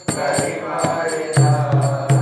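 A man's voice singing a devotional chant into a microphone, over regularly struck jingling percussion. A low pulsing bass comes in about two-thirds of the way through.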